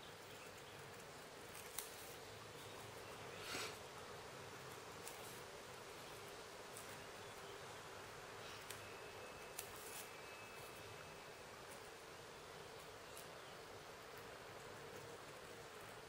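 Faint, scattered snips of scissors cutting thin paper: a handful of soft clicks a few seconds apart over a steady low hiss.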